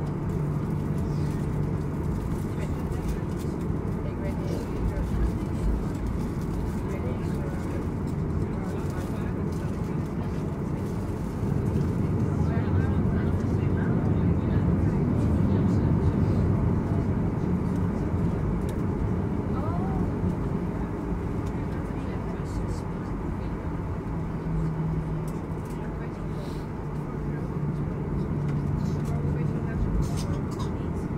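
Boeing 737 passenger-cabin noise while taxiing: the engines run at idle with a steady low hum and airflow hiss. The sound swells for several seconds about midway.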